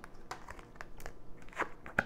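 Tarot cards being handled on a cloth-covered table: a run of light clicks and rustles as cards are picked up, slid and turned over, with a sharper card snap near the end.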